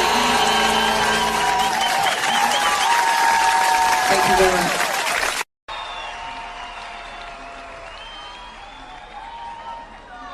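Audience applause and cheering as a song's last notes die away, cut off abruptly about five and a half seconds in. A quieter, duller-sounding live recording follows, with faint voices murmuring.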